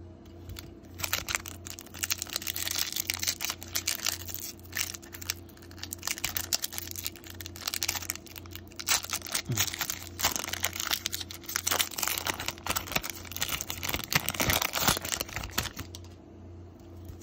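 Foil wrapper of a baseball-card pack being torn open and crinkled by hand, a dense run of crackling from about a second in until near the end. A steady low hum runs underneath.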